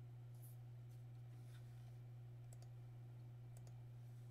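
Near silence: a steady low hum with a few faint computer mouse clicks.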